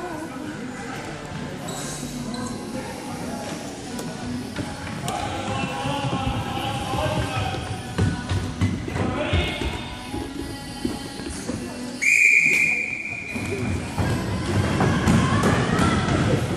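A sports whistle blown once in a single steady blast of about a second, near three-quarters of the way through. Around it are scattered thuds of the ball and bubbles on the hard court, and players' voices.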